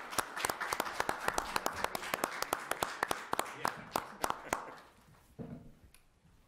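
A small group in a meeting room applauding, a quick run of hand claps that dies away after about four and a half seconds.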